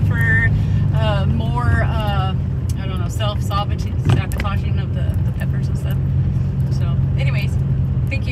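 Steady low hum of engine and road noise inside a moving car's cabin, with a woman's voice over it and one sharp knock about four seconds in.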